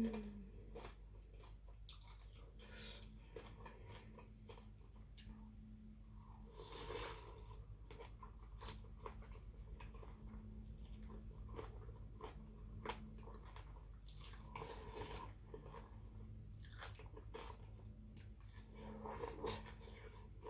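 Close-miked chewing and slurping of khanom jeen rice noodles in spicy papaya salad, with wet crunching of fresh vegetables and raw shrimp, made up of many small clicks and crackles. A few longer, louder slurps come about a third of the way in, past the middle, and near the end.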